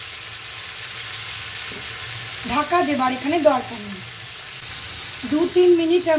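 Yardlong beans sizzling steadily in hot vegetable oil in a nonstick frying pan over a medium-to-high gas flame, softening as they fry, with a spatula stirring them now and then.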